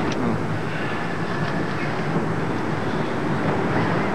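Steady outdoor street ambience on a location film soundtrack: a constant low rumble and hiss with no distinct events.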